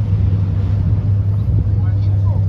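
A steady low engine drone running without change, with some wind rumble on the microphone.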